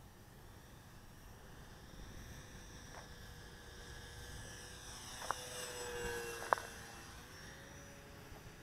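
The electric brushless motor and propeller of an E-flite P-47 Thunderbolt RC model whine as it flies past, growing louder to a peak around six seconds in, then dropping in pitch as it passes. Two sharp clicks come near the peak.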